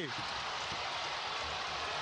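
Steady arena crowd noise, an even wash of spectators at moderate level, cutting off suddenly at the end.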